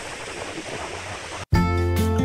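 Steady outdoor wind and water noise on the microphone, cut off abruptly about one and a half seconds in by background music with a steady bass and plucked guitar notes.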